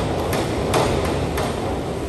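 A few sharp knocks echoing around an indoor pool hall: a 1 m diving springboard rebounding and rattling after a takeoff, and a diver's entry into the water.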